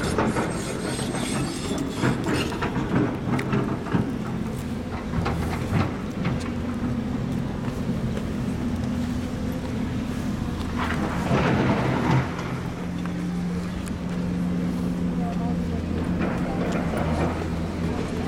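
An engine running steadily with a low hum that shifts in pitch about twelve seconds in, with people talking and handling knocks on the microphone.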